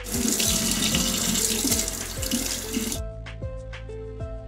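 Kitchen faucet running into a stainless-steel sink, stopping suddenly about three seconds in. Background music with plucked notes plays throughout.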